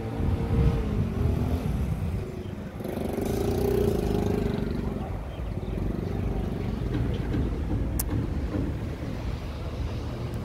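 An engine running with a steady low rumble whose pitch wavers slightly, a little louder for a couple of seconds near the middle, with a single short click near the end.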